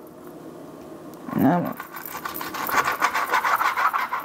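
Kitchen knife cutting raw chicken wings apart at the joint on a wooden cutting board, giving a rapid, scratchy sound in the second half. A short hummed vocal sound comes about a second and a half in.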